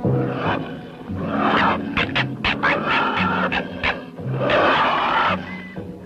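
Soundtrack music with low sustained notes, overlaid by three long, harsh animal growls in a confrontation between wild animals.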